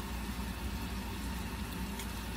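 Steady low hum with an even hiss, unchanging throughout: background room noise.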